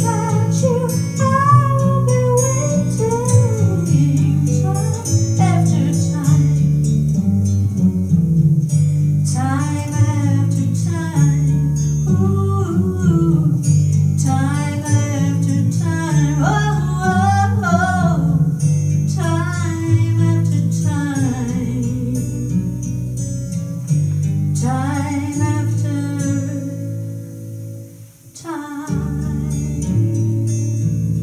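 A woman singing a slow song live into a microphone over a guitar backing track. Near the end the music drops almost away for a moment, then comes back in.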